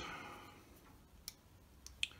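Near silence with two faint light clicks a little over half a second apart, from small parts being handled on a workbench.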